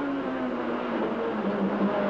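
BMW 3 Series Supertouring race car's four-cylinder engine held at high revs in sixth gear, heard from on board, a steady high note that drops slightly about halfway through.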